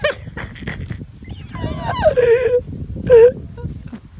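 A man wailing in wordless cries: a long, wavering cry about a second and a half in, then a short, loud yelp near the end.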